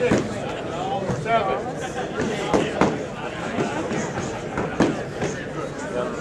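Spectators shouting at a boxing match, with several sharp thuds from the ring, the loudest near the start and two close together about two and a half seconds in.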